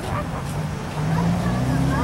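Low, steady hum of a motor vehicle engine that rises slightly in pitch and grows louder in the second second, with faint voices in the background.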